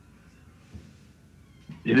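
A short pause in a man's speech, with only faint background noise, before his voice resumes near the end.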